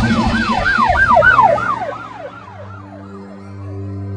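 A siren yelping, its pitch swooping up and down about three times a second, fading away over the first two and a half seconds. Loud music beneath it drops out about two seconds in, leaving a low steady drone.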